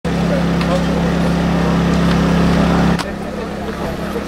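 A steady, loud low motor hum with people's voices faint in the background. The hum shifts slightly lower about three seconds in.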